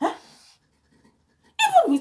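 A single short yelp, falling in pitch, about half a second long, then quiet. A woman's speech starts about a second and a half in.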